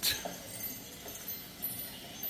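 Quiet background ambience of a theme park walkway, with a faint short knock a little over a second and a half in.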